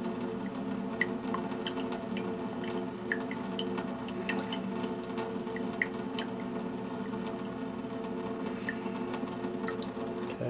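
Tap water running steadily into a stainless-steel sink, with occasional small drips and splashes.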